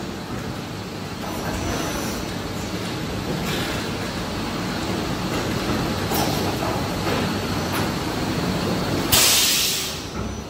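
A 48-cavity PET preform injection moulding machine running its cycle, a steady mechanical rumble and hum. About nine seconds in there is a sudden loud hiss that fades away over about a second.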